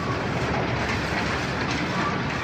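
Steady, loud industrial rumbling noise of coke-plant machinery, with a few faint clicks.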